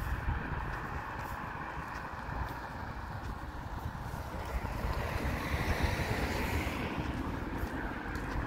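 Wind buffeting a phone's microphone, heard as a low, fluttering rumble, over a steady background hiss that swells past the middle.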